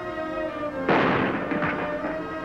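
Band music playing, cut across about a second in by a single loud cannon shot from a gun salute, which rings out and fades, with a smaller crack just after.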